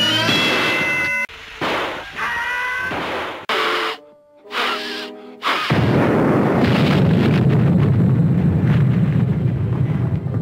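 Cartoon slapstick sound effects over an orchestral score: sharp hits and short pitched stings in the first few seconds, then, about six seconds in, a loud cartoon explosion whose low rumble carries on.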